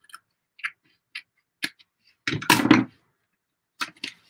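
Scissors snipping through envelope paper: a few short, crisp snips about half a second apart. A louder burst of paper handling comes about two and a half seconds in.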